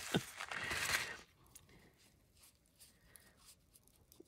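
Lace fabric pouch filled with loose sachet-scent granules, rustling as it is squeezed in the fingers for about the first second. Then faint scattered ticks as the granules leak through the lace and fall onto paper.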